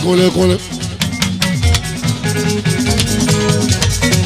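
Live Fuji band music: a shaker rattles in a quick rhythm over electric bass guitar and plucked guitar notes, with percussion strokes. The lead singer's voice ends about half a second in, leaving the band playing alone.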